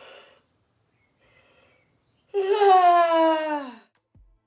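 A girl's loud, voiced yawn: a couple of faint breaths, then a long drawn-out groan of about a second and a half that falls steadily in pitch.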